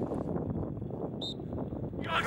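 Open-air ambience dominated by a low wind rumble on the microphone, with one brief high-pitched chirp just after a second in.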